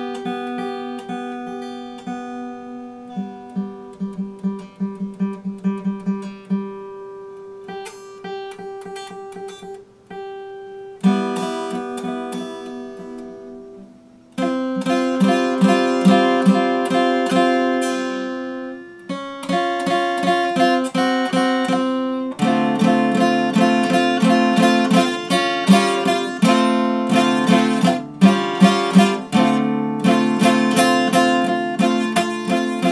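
Epiphone dreadnought acoustic guitar played solo: softly picked single notes and quickly repeated notes at first, then loud strummed chords from about halfway, growing fuller near the end.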